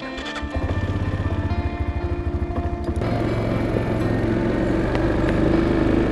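ATV engine starting and idling with an even pulsing beat, then running steadier and a little louder from about three seconds in as the quad gets under way.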